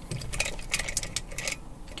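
A run of short metallic clicks and taps as hands handle an opened Burg-Wächter Gamma 700 padlock clamped in a vise.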